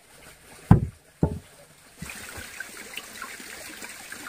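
Two heavy knocks of a wooden pole set down on a wooden pole frame, about half a second apart, in the first second and a half. From about halfway a steady hiss of running water sets in, with small scattered ticks.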